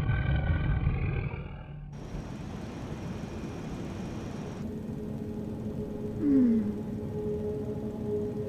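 Sci-fi vehicle sound effects for an animated chase. A pitched drone with low rumble cuts at about two seconds to a steady rushing engine-and-air noise carrying a hum. About six seconds in, a short swoop falls in pitch and makes the loudest moment.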